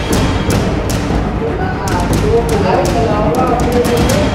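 Chess pieces clacking down on boards and digital chess clocks being tapped in fast blitz play: a dozen or so sharp knocks at irregular intervals, coming thicker in the second half. They sound over background music and voices.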